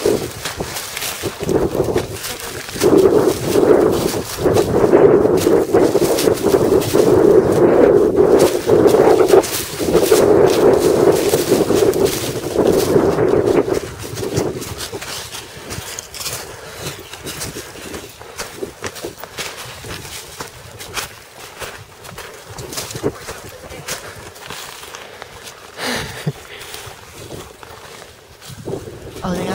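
Footsteps crunching over dry leaves and twigs while hiking through woods, with camera handling noise and many small clicks and snaps. For about the first half a louder muffled voice sits over them, then it drops away, leaving the quieter footsteps.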